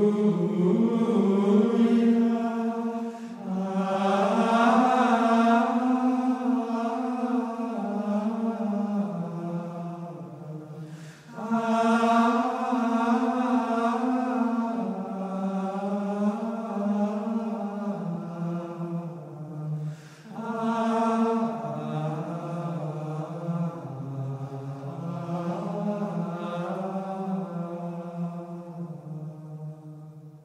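Benedictine monks' choir of men's voices singing Gregorian chant in unison, in long flowing phrases broken by short pauses for breath about every eight or nine seconds, fading at the very end.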